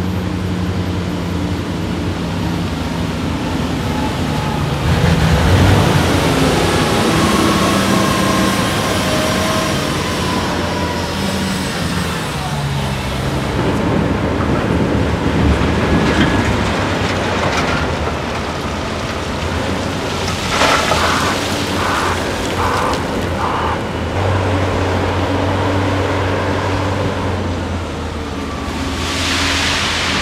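Large diesel mining machines running: a loaded Komatsu haul truck and a Komatsu WA600 wheel loader working, with the engine note shifting up and down. About two-thirds of the way through, a reverse alarm gives a short run of beeps.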